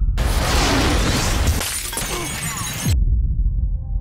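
Film explosion sound effects: a loud blast rush full of shattering and breaking debris, with deep falling booms, that cuts off suddenly about three seconds in. A faint held music chord follows.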